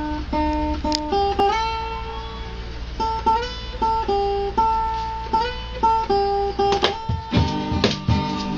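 Acoustic guitar playing a song's intro: single picked notes ringing one after another as a slow melody, then strummed chords start near the end.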